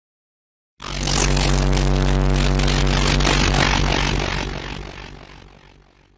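Intro sound effect: a loud, deep, steady drone with a rushing hiss over it, starting suddenly about a second in and fading out over the last two seconds.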